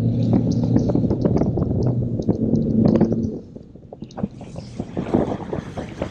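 Bass boat outboard motor running hard through a hole shot with the live wells full, its note climbing just before and then holding steady until it falls away about three seconds in. After that there is wind and water rushing and slapping against the hull.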